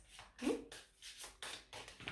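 A tarot deck being shuffled by hand: a faint, irregular series of soft card-on-card flicks and taps.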